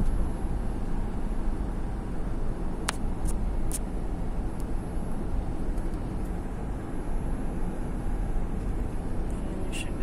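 Steady low road noise inside a moving car's cabin, from tyres and engine while driving. A few brief clicks come about three to four seconds in.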